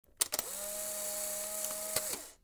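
Intro sound effect: two sharp clicks, then a steady machine-like hum with hiss over it that holds at one pitch, ending with another click.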